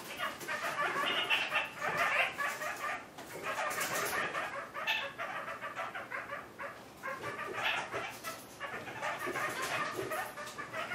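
Kakariki (New Zealand parakeets) chattering and clucking in short broken runs of calls, with small clicks throughout.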